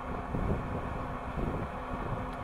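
Wind buffeting the camera microphone in low, uneven rumbles, with a faint steady hum underneath.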